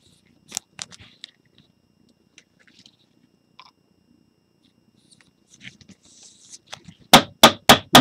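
Gloved hands handle a trading card and a clear plastic card holder, making soft rustles and small clicks. Near the end come four sharp, loud clicks in quick succession.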